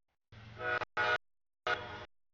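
Freight locomotive air horn sounding three blasts as it approaches a grade crossing: a longer blast, a short one, then another starting near the end. This is the standard crossing warning.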